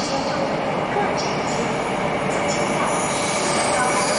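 Taiwan Railways push-pull Tze-Chiang express, an E1000 trainset, approaching through the tunnel to run through an underground station without stopping. A steady rail rumble grows slightly louder toward the end.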